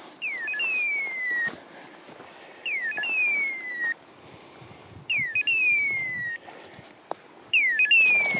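Hunting-dog beeper collar in point mode, sounding an electronic call about every two and a half seconds: a quick upward chirp, then a falling whistle about a second long, four times. It signals that the dog is standing on point over game.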